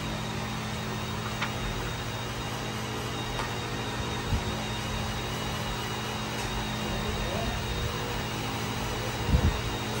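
ALM 3222 auto laminator running as a sheet feeds through its rollers: a steady mechanical hum with a faint high whine above it and a couple of faint ticks.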